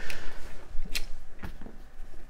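Small hand tools handled on a desk: two sharp clicks about half a second apart amid light handling, as a screwdriver and a small metal bit are picked up and set down.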